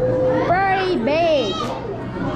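High-pitched children's voices: a drawn-out wordless call that ends about half a second in, followed by two short rising-and-falling exclamations.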